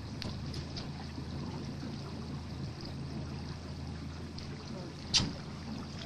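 Steady low hum of a boat's motor idling. About five seconds in, one short sharp knock stands out over it.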